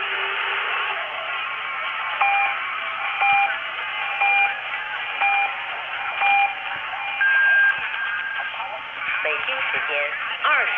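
Top-of-the-hour time signal of China National Radio 1 (CNR1), received on 981 kHz medium wave: five short pips about a second apart, then a longer, higher pip marking the hour. It comes through the narrow, hissy audio of the AM receiver with faint station audio beneath it.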